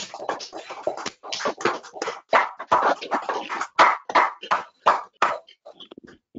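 A round of applause on a video call: several people clapping at once, heard through the call audio, with irregular claps that thin out near the end.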